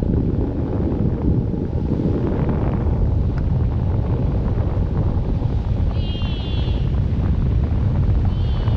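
Heavy wind buffeting the microphone as a parasail is towed low and fast over the sea, with the rush of wake water just below. A brief high-pitched squeal comes about six seconds in.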